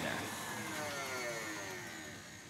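KitchenAid stand mixer with a wire whip, its motor whine falling steadily in pitch as it slows, beating eggs and sugar into a pale foam.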